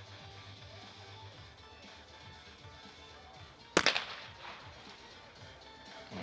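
A single shotgun shot from a trap competitor firing at a clay target, sudden and loud about four seconds in, with a short echo trailing off.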